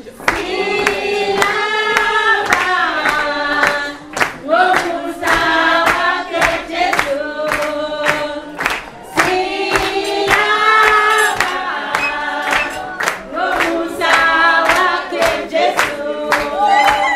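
A woman singing into a microphone, with other voices singing along and hands clapping a steady beat of about two claps a second.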